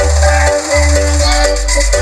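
Electronic dance music played very loud through a large outdoor sound system of 24 stacked subwoofers. Heavy held bass notes change every half second or so under a stepped synth melody and a fast shaker-like beat.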